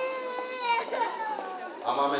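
A young child crying: one long drawn-out wail whose pitch slides downward toward its end. A man starts talking near the end.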